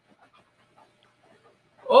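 Near silence: faint room tone over the video-call audio, with a man's voice breaking in with an exclamation near the end.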